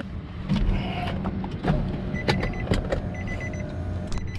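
Inside a car: clicks and knocks of handling and the door over a low steady hum, with the car's electronic warning chime beeping in two short repeated runs from about halfway through.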